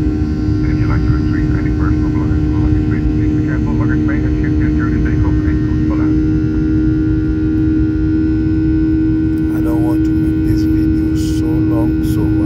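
Airliner cabin noise during the climb after takeoff: a steady loud rumble of engines and airflow with a steady droning tone over it. Faint voices murmur in the background, a little more clearly near the end.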